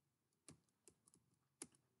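Near silence broken by a few faint, sharp clicks from a computer keyboard or its controls, about half a second, one second and a second and a half in, as the slide animation is advanced.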